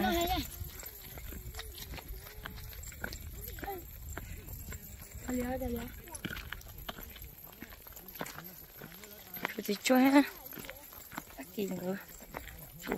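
A woman's voice in a few short, separate phrases, the loudest about ten seconds in. Scattered light clicks run underneath, with a low rumble through the first half.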